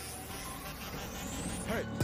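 Jungheinrich ETV 2i electric reach truck being driven, its electric drive giving a thin whine that rises steadily in pitch over a low steady hum.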